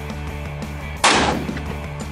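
A single gunshot from a shoulder-fired long gun about halfway through, a sharp crack dying away over about half a second, over steady background music.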